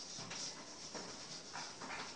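A chalkboard being wiped with a duster: several short, uneven scrubbing strokes.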